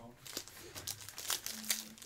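A trading-card pack's plastic wrapper crinkling and crackling in the hands as the pack is picked up and handled before opening.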